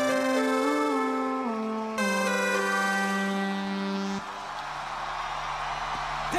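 Access Virus TI synthesizer playing sustained, buzzy lead notes with slides in pitch, changing note about two seconds in and cutting off about four seconds in. Crowd cheering follows.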